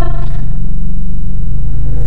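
A loud, steady low drone or rumble, with almost nothing in the higher register above it.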